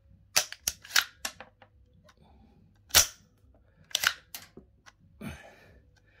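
The action of an AR-15-style .22LR semi-automatic rifle being worked by hand with snap caps: sharp metallic clicks and clacks as the dummy rounds are fed from the magazine, dry-fired and ejected. There are several quick clicks in the first second and a half, a single loud clack about three seconds in, a cluster of clicks about four seconds in and a duller knock near the end.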